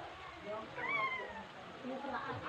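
A cat meowing once about a second in, a short call that rises and then falls in pitch.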